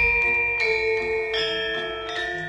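Javanese gamelan (karawitan) playing: bronze metallophones and kettle gongs struck in turn, each note ringing on into the next.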